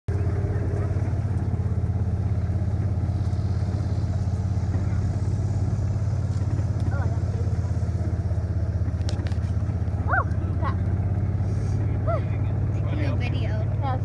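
A vehicle's engine running steadily with an even low drone as it drives along at a constant pace. A few short voice fragments break in during the second half.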